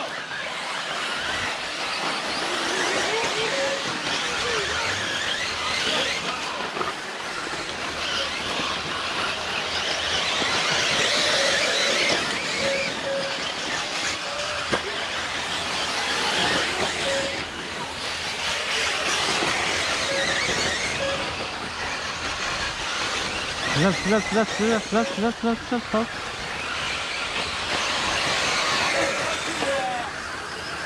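Electric 1/8-scale RC buggies racing on a dirt track: a high motor and drivetrain whine that swells and fades every few seconds as cars pass, with short beeps now and then.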